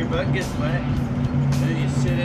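Old school bus under way, a steady engine and road drone heard from inside the cabin with the windows open, with voices or music over it.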